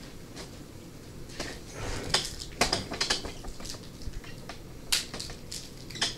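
Irregular clicks, knocks and light scrapes of hands working at a glass display case and the things in it, loudest about two seconds in and again near five seconds in.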